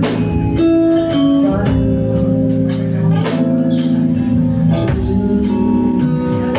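Live band playing a song: drum kit, electric guitar, bass guitar and keyboard, with a woman singing into a microphone in held notes.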